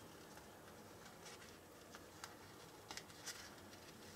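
Near silence with a few faint, small clicks and rustles of fingers peeling a small sticker off its paper backing.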